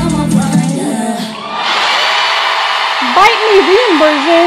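A live pop performance ends about a second in, and a concert crowd starts cheering and screaming. Near the end a single voice whoops, its pitch sliding up and then wavering.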